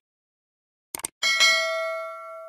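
Subscribe-button sound effect: a short mouse click about a second in, then a bell chime that rings on and slowly fades.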